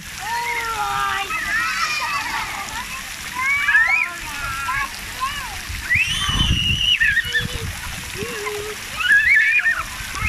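Young children calling out in high voices while splashing in shallow water on a splash pad, with one long high shout about six seconds in.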